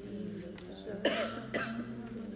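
A person coughing twice, about a second in and again half a second later.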